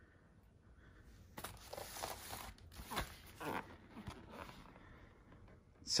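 Faint rustling and scraping of a cardboard box being slid out from a stack of boxes and plastic wrap, with a small knock about three seconds in.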